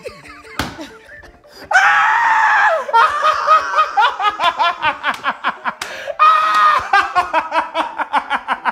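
A group of people laughing hard, with loud high-pitched shrieks of laughter in quick, pulsing bursts. It starts quieter and breaks into full laughter a little under two seconds in, with a long shriek there and another just past six seconds.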